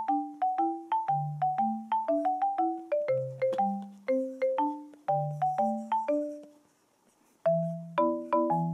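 Light background music: a bouncy melody of short struck notes, each dying away quickly, over a bass line. It breaks off for about a second near the end, then starts again.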